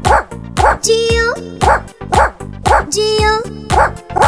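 Children's sing-along music with cartoon dog barks on the beat: three barks, then the sung letters 'G-O', twice over.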